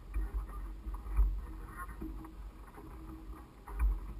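Wind buffeting the microphone of a camera mounted high on a mast, in uneven gusts that peak about a second in and again near the end, with faint light rustling underneath.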